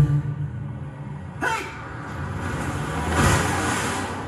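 A vehicle going past, heard as a low rumble with a whoosh that swells about three seconds in and then fades. A sharper sudden sound comes about a second and a half in.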